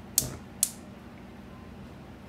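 Two sharp clicks about half a second apart as the stove is switched on, over a faint steady low hum.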